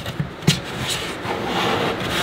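A cut length of foam pool noodle being pushed into a gecko enclosure, rubbing and scraping against the enclosure. There is one sharp knock about half a second in.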